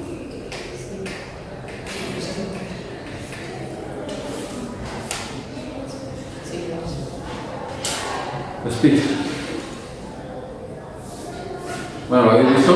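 Scattered laptop keystrokes and clicks, echoing in a large lecture hall, with a short murmured voice about nine seconds in.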